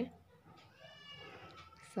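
A faint, high animal call in the background, drawn out for about a second in the middle with a slight rise and fall in pitch.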